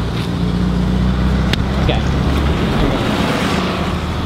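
Street traffic noise: a steady low vehicle engine rumble, with the noise of a passing car swelling about three seconds in.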